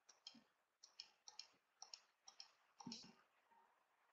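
Faint, irregular clicking from a computer being operated: about a dozen short clicks, several in quick pairs.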